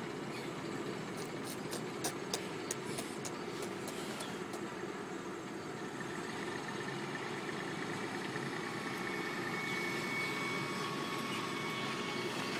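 Diesel semi truck's engine running steadily as the truck drives slowly across a field, growing a little louder in the second half as it comes closer. A run of sharp clicks or rattles sounds between about one and four seconds in.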